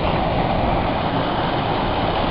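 Steady rushing of an artificial rock waterfall pouring into a shallow pool.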